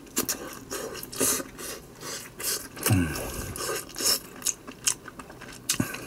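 A mouthful of fried rice being chewed, with a metal spoon clicking and scraping against a glass bowl, and a short hum about three seconds in.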